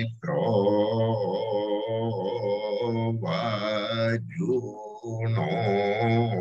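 A single man chanting Vedic mantras in a steady, low voice, holding long syllables with small rises and falls in pitch and pausing briefly for breath a couple of times.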